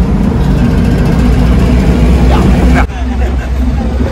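Goods truck on the move, heard from its open cargo bed: a loud, steady low rumble of engine, road and wind. It drops suddenly about three seconds in.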